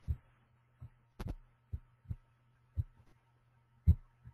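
Irregular short clicks with low thumps, about seven in four seconds, some in a quick cluster, over a faint steady electrical hum: a computer mouse being clicked while operating charting software.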